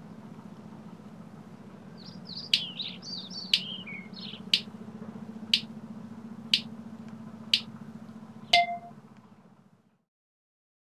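Bird-like chirps for a couple of seconds over a steady low hum, with sharp clicks about once a second. The last click carries a short tone, then the sound fades out.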